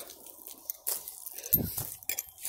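Footsteps on a forest floor of dry leaves and fallen sticks, heard as scattered irregular clicks and rustles. A brief low voiced sound from the walker about one and a half seconds in is the loudest moment.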